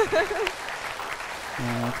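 Studio audience applauding. A voice sounds over the clapping at the start, and the applause thins out near the end.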